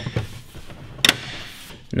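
Plastic grille insert being pressed into the grille housing and snapping into its clips: one sharp click about a second in, with a few lighter clicks and a brief rubbing of plastic around it.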